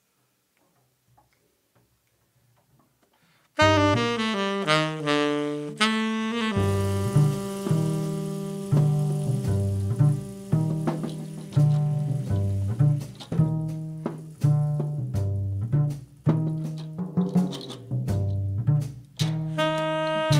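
Jazz trio of tenor saxophone, plucked double bass and drum kit starting a tune. After about three and a half seconds of near silence the saxophone comes in alone with a run of notes, and about three seconds later the bass joins with a repeating low figure under cymbals and drums.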